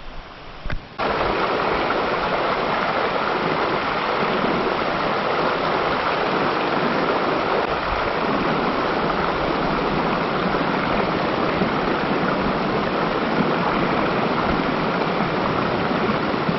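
Shallow, rocky mountain trout creek rushing over stones, a loud, steady wash of water that starts suddenly about a second in.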